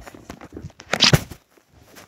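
Handling noise of a phone held close to the body: scrapes, rustles and knocks of fingers and clothing against the microphone, with one louder scuff about a second in.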